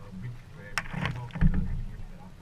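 Kayak paddle strokes in the water: splashing as the blade goes in, sharp about a second in, then a heavy low thump about a second and a half in.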